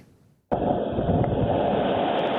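Storm wind and rain battering a covered boat marina, heard through a security camera's microphone as a loud, rough rushing noise. It starts abruptly about half a second in.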